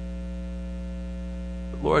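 Steady electrical mains hum: a low buzz of evenly spaced tones at a constant level. A man's voice starts near the end.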